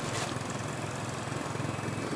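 Small fuel-driven generator engine running steadily, a low even hum.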